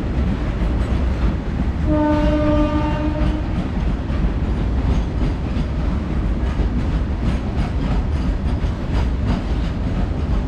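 Indian Railways freight train of tank wagons running past at speed: a steady rumble with the wheels clattering over rail joints. About two seconds in, a train horn sounds once for about a second and a half.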